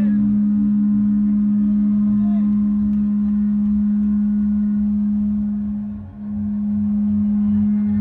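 A loud, steady low drone on one note through the concert PA, opening the song's intro, with a soft pulsing low beat beneath it. The drone dips out briefly about six seconds in, then comes straight back.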